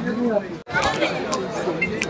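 Several people's voices chattering, not clearly worded, broken by a sudden brief drop-out about a third of the way in.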